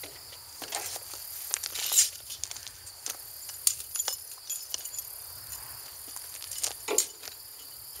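Insects chirping steadily in the background, over footsteps crunching on gravel and scattered sharp clicks and knocks from handling a metal hitch part and a steel tape measure; the loudest knock comes about two seconds in, another just before the end.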